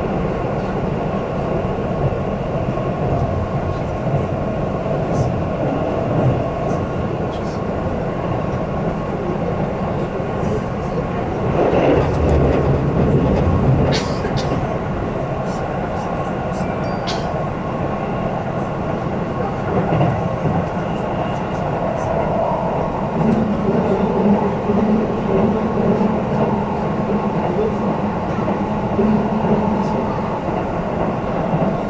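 Keihan electric train running at speed, heard from inside a passenger car: a steady rumble of wheels on rail with a few sharp clicks. It grows louder for a couple of seconds about twelve seconds in, and a steady low hum sets in about three-quarters of the way through.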